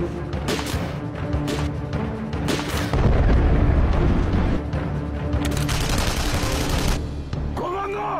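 Film-trailer soundtrack of music mixed with battle sound effects: separate gunshots in the first few seconds, then a loud blast about three seconds in that runs on as dense gunfire and explosion noise for several seconds. A man shouts just before the end.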